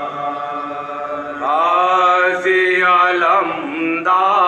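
Men's voices chanting a noha, a Shia mourning lament, together; about a second and a half in, a louder lead voice comes in, sliding up in pitch and holding long wavering notes.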